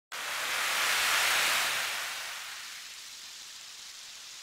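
A whoosh sound effect: a smooth rush of hissy noise that comes in suddenly, swells to its peak about a second in, then fades away over the next two seconds.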